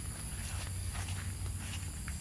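Footsteps of a person walking outdoors, a few irregular steps over a steady low rumble.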